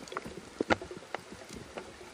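Underwater sound picked up through a camera housing: scattered clicks and pops over a faint hiss. Two clicks stand out, one a little before a second in and one just after.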